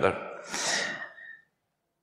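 A man's sharp intake of breath into a microphone between sentences, a short hiss.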